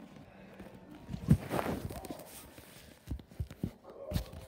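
Camera handling noise: a loud dull thump about a second in, a brief rustle of fabric, then a few softer knocks near the end as the camera is moved against cloth.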